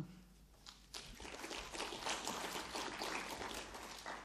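Audience applauding, beginning about a second in and keeping up a steady clatter of many hands.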